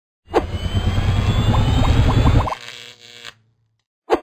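Logo intro sound effect: a low rumble with a slowly rising whine and a run of quickening blips, cutting off abruptly about two and a half seconds in, then a short fading tail.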